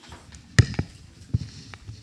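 Knocks and handling noises of objects on a table close to a microphone, with a sharp knock about half a second in and another a little after a second.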